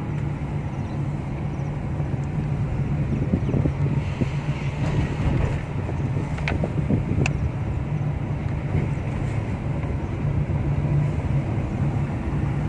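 Car cabin noise while driving slowly: a steady low engine and tyre drone heard from inside the car, with two short light clicks about halfway through.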